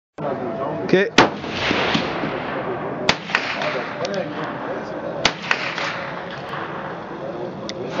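Three sharp .22 Long Rifle rifle shots, about two seconds apart, with fainter cracks of other shots and a murmur of voices in between.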